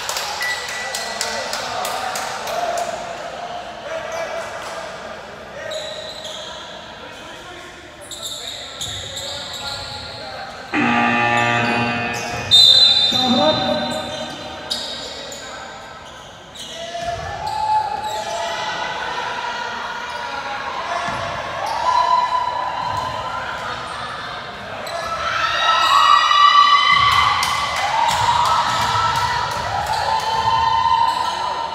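Basketball game on a hardwood gym floor: the ball bouncing and dribbling, with players' and onlookers' voices echoing in the large hall.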